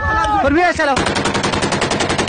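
A man's voice calls out, then a burst of automatic rifle fire starts about a second in: rapid, evenly spaced shots, roughly ten a second, running for over a second.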